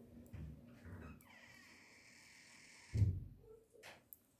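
Faint handling sounds of knitting, with soft knocks and then one dull thump about three seconds in as the knitted piece is set down and pressed flat on a cloth-covered table.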